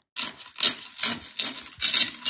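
Rhythmic scraping strokes, about two or three a second, starting just after a brief silence.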